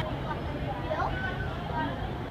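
Indistinct background voices of people chatting, with no clear words, over a low steady rumble.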